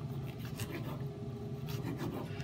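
Serrated knife slicing a Roma tomato into strips on a wooden cutting board: a run of short scratchy cutting strokes, several to the second.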